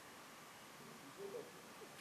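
Near silence: room tone, with a faint, brief voiced sound a little over a second in.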